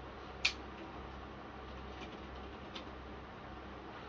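Quiet room tone, a steady low hum and faint hiss, with a single short click about half a second in and a fainter tick later.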